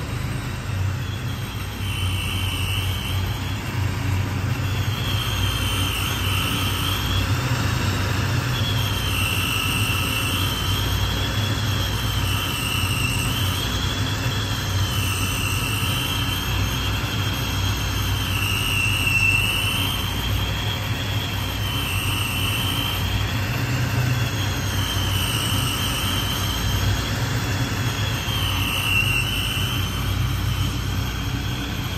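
Supercharged LS V8 in a Chevelle idling: a steady low rumble with a high whine that rises and falls every two to three seconds.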